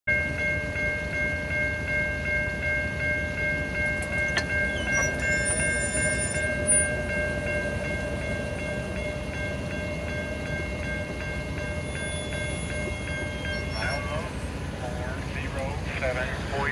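Railroad grade-crossing warning bell ringing in rapid, even strokes while the gate arm lowers, then stopping about two seconds before the end once the gate is down.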